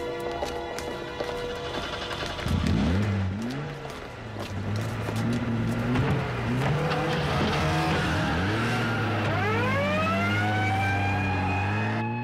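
Car engine revving, then accelerating, its note rising over the last few seconds and levelling off, with music playing underneath.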